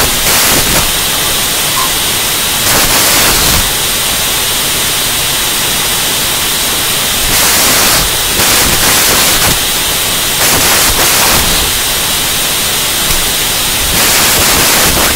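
Loud, steady static hiss filling the audio feed, swelling briefly every few seconds, with no voice coming through: the sound feed has failed and carries only noise.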